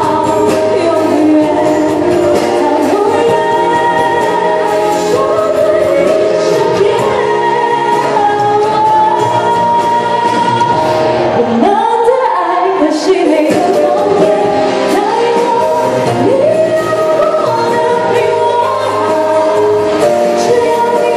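A woman sings a Mandarin pop song live into a handheld microphone over an amplified backing track.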